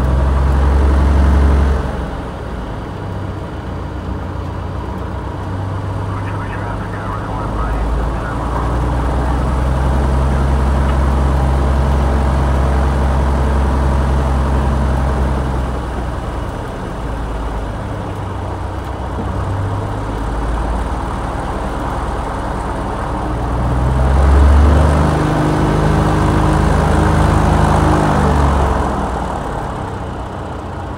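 Van's RV-10's six-cylinder Lycoming piston engine and propeller running at taxi power, heard from inside the cabin. The engine note shifts in pitch and loudness several times, rising about 24 seconds in.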